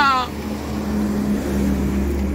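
Steady low motor hum, like an engine running, after a man's speech breaks off just at the start.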